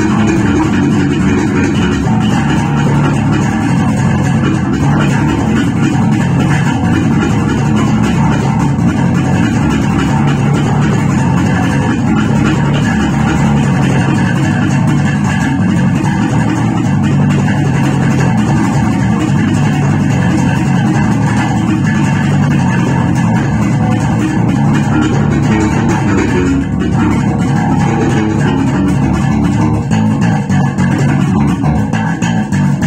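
Electric bass guitar played fingerstyle, a continuous run of plucked notes in a steady groove.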